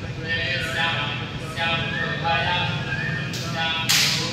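A man's voice chanting Vedic Sanskrit mantras in a melodic recitation, with a sharp click just before the end.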